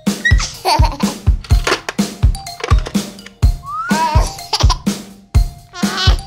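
Children's cartoon song backing music with a steady beat of about two drum hits a second. Over it come short giggles from a baby character and a rising whistle-like glide about two-thirds of the way in.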